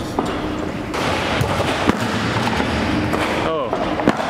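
Steady chatter of a busy weightlifting training hall, with a few sharp knocks about a second and a half to two seconds in, likely a loaded bumper-plate barbell dropped onto the platform after a 130 kg power snatch.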